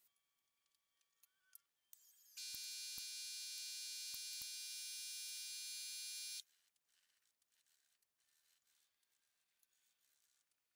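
A loud, steady buzzing tone with many overtones, starting abruptly about two seconds in and cutting off just as abruptly about four seconds later; faint clicks and light scraping come before and after it.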